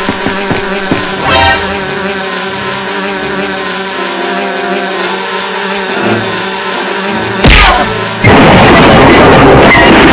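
Background video-game music for about seven seconds, then a sudden loud crash and, a moment later, a long, loud, noisy crashing sound effect as a man falls and wrecks the living room.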